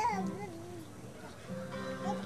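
A high, wavering voice, like a small child's cry, trails off in the first second. Music with steady held notes begins about a second and a half in.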